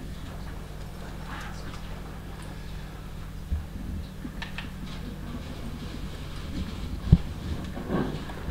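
Steady low hum with a few faint taps, and one sharp knock about seven seconds in.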